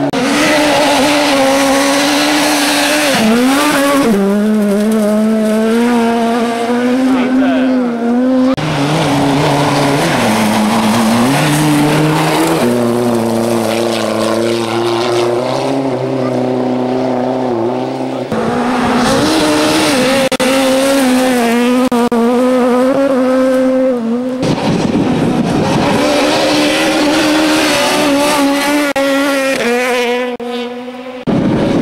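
Rally cars at full throttle on a gravel stage, one after another. The engine note climbs, drops sharply at each gear change and climbs again.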